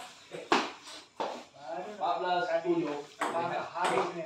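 A few sharp, irregularly spaced clicks of a table tennis ball striking bats and the table, two of them loud, about half a second in and at the very end. Men's voices talk in between.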